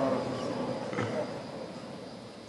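The last of the imam's voice dying away in the reverberation of a large mosque hall heard over its loudspeaker system, fading into a faint steady background hum, with a single soft knock about a second in.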